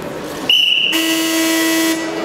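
A short, steady, high whistle about half a second in, then a loud electronic buzzer sounding for about a second, the timekeeper's signal stopping the wrestling bout.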